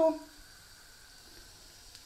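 Rice, onion and raisins frying in oil in a pan, a faint steady sizzle after a spoken word ends.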